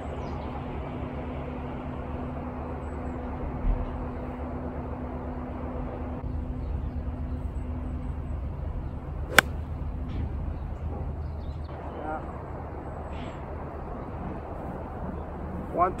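An 8 iron striking a golf ball teed high off grass: one sharp click about nine seconds in, over a steady low background hum. The golfer felt he caught it a little on top.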